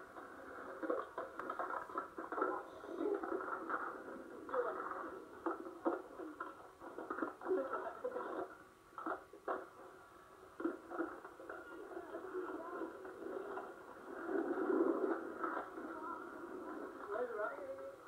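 Skateboard wheels rolling on asphalt with repeated sharp clacks of the board, played back from a VHS tape through a TV speaker so it sounds thin and boxy. Indistinct voices are mixed in.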